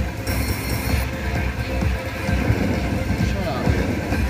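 Casino slot-floor din: electronic music and chimes from the slot machines over a steady murmur of crowd voices, with a short bright burst of sound about half a second in.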